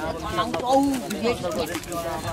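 Speech only: several people talking in conversation.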